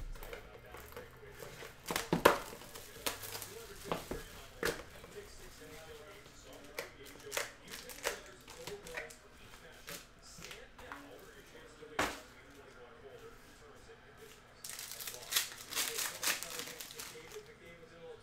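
Trading-card packaging being handled: a few sharp snaps and clicks of cardboard. Near the end comes a burst of crinkling and tearing as a foil card-pack wrapper is ripped open.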